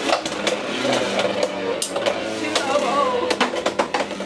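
Beyblade X spinning tops whirring and clashing in a plastic stadium, with irregular sharp clacks as they hit each other and the rail.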